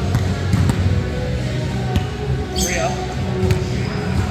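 A volleyball bouncing on a hardwood gym floor, a few sharp, irregular knocks, with a short sneaker squeak a little past halfway, over background chatter in a large echoing gym.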